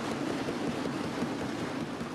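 Many members of parliament thumping their desks in approval, a dense, steady patter of knocks that sounds like rain.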